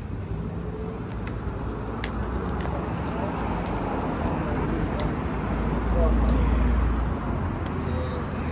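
City street traffic, with a vehicle passing that is loudest about six to seven seconds in, and indistinct voices nearby.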